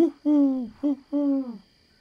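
Cartoon owl hooting: a brief rising hoot, then a long hoot, a short one and another long one, the long ones dropping in pitch at their ends.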